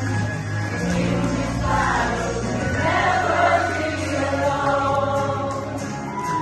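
A group of singers performing a gospel song together over instrumental accompaniment with a steady bass line.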